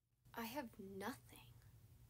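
A person's voice: a short, quiet two-part utterance that the recogniser did not catch.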